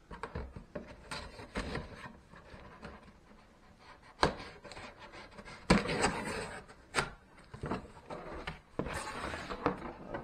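Cardboard shipping box being cut open along its packing tape, then its flaps pulled open: scraping and rubbing of cardboard, with a few sharp knocks.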